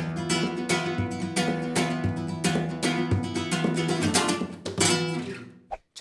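Nylon-string flamenco guitar strummed with the fingers in a rumba flamenca rhythm: a quick run of strokes over ringing chords, stopping just before the end.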